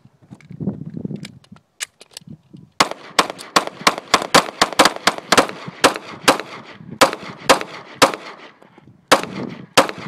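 A rapid, irregular series of sharp bangs, about three or four a second, starting about three seconds in, after a few scattered pops.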